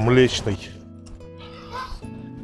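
Background music with steady held notes. A voice is heard briefly at the start and faintly near the end.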